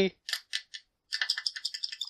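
Small plastic plug-in wall adapter being handled and shaken. A few separate light clicks come first, then from about a second in a quick run of rapid plastic clicks and rattles.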